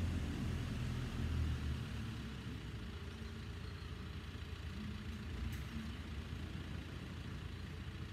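A steady low engine hum, like a motor vehicle idling, louder for the first two seconds and then fading back, over faint outdoor background noise.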